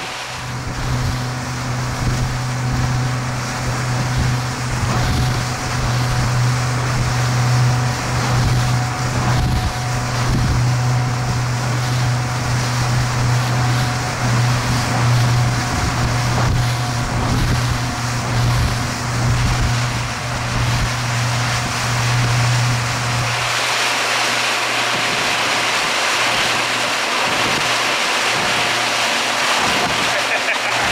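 Suzuki outboard motor running steadily at towing speed, a constant low drone, with wind and rushing water from the wake. About 23 seconds in the engine drone falls away, leaving mostly the hiss of wind and spray.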